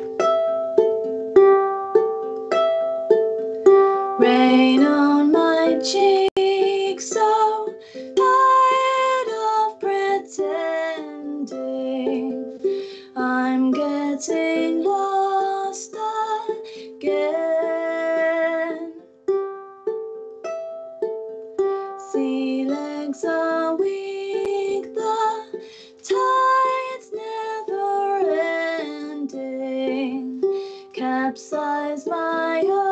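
A ukulele played in a steady rhythm with a woman singing over it, the voice coming in about four seconds in.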